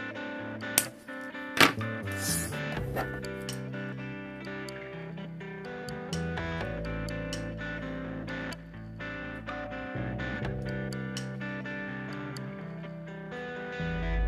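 Background guitar music throughout. About a second in come two sharp clicks, wire cutters snipping the end off thin copper wire.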